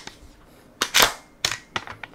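Tokyo Marui MTR-16 gas blowback airsoft rifle being fired and cycled: about four sharp mechanical clacks of the bolt carrier in the second half, the loudest about a second in.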